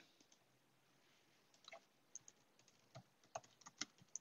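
Faint typing on a computer keyboard: a few scattered keystrokes start a couple of seconds in and come quicker near the end, with near silence between them.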